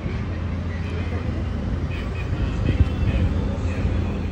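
Outdoor street ambience: a steady low rumble with faint, indistinct voices of people nearby.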